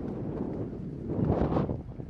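Wind gusting across the microphone: a rushing noise that swells loudest about a second and a half in, then dies away.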